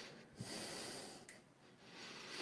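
A faint breath, a short hissy exhale or sniff lasting under a second, starting just after a small click.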